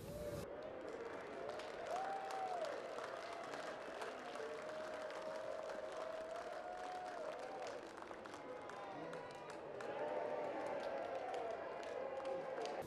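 Ballpark crowd shouting and cheering with scattered clapping, swelling about ten seconds in.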